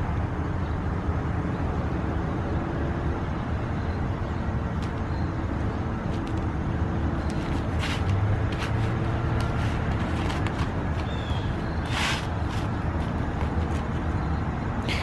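Steady low outdoor background rumble, of the kind distant road traffic makes, with two short noises about eight and twelve seconds in.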